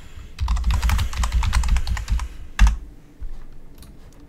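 Computer keyboard typing: a fast burst of keystrokes lasting about two seconds, then one harder keystroke, then a few light clicks.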